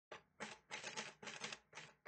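Typewriter sound effect: about five quick bursts of key clatter with short gaps between them.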